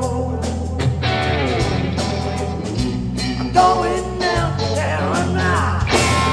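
Live blues-rock band: a lead electric guitar plays bending, sliding phrases over bass guitar and drums.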